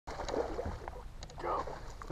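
Wind rumbling on the microphone, with a few faint clicks and a short vocal sound about one and a half seconds in.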